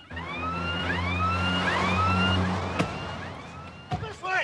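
A siren sweeping up in pitch over and over, about twice a second, over a car engine running steadily that cuts off about two and a half seconds in, followed by a single click.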